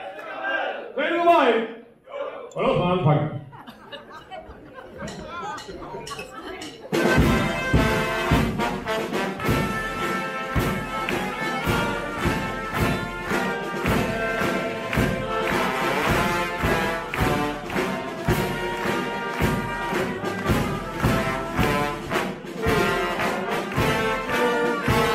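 A few seconds of voices, then about seven seconds in a carnival brass band of trumpets, trombones, bass drum, snare drum and cymbals strikes up together and plays a lively tune over a steady drum beat.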